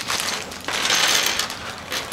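Clear plastic zip-top bag crinkling as small plastic action-figure accessories (a rifle, magazines, small parts) tumble out and clatter onto a tabletop, busiest around the middle.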